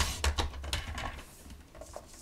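Paper trimmer's blade carriage sliding along its rail, cutting through cardstock: a click as it starts, then a low rumbling slide with a few small clicks for about a second, fading after.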